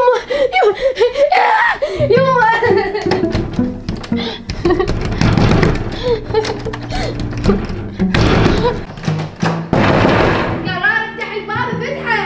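A high voice rising and falling at the start, over background music that carries on alone with held notes through the middle. Speech starts again near the end.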